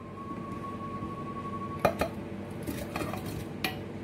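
Steel kitchenware clinking and knocking as watermelon pieces go from a steel bowl into a stainless-steel blender jar: two sharp metal clinks about two seconds in, then a few lighter knocks.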